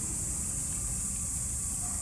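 Steady high-pitched drone of an insect chorus over a low, even rumble.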